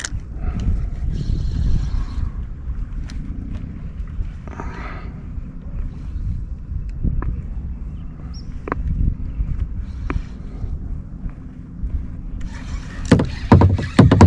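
Plastic sit-in kayak drifting on choppy water: water slapping and lapping against the hull, a steady low rumble, with scattered light knocks.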